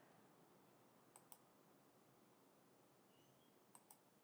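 Near silence with faint computer mouse clicks: a pair of clicks about a second in and another pair near the end.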